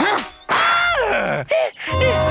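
A person's long groan sliding down in pitch, then a second, shorter falling cry.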